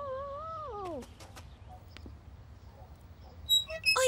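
A cartoon dinosaur's drawn-out vocal moan lasting about a second and a half, its pitch holding and then sliding down at the end. A few faint clicks follow.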